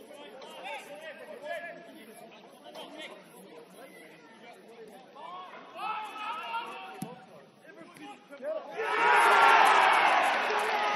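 Players' distant shouts and calls across a football pitch, with a single sharp thump about seven seconds in. Near the end, a crowd of spectators suddenly breaks into loud shouting and cheering.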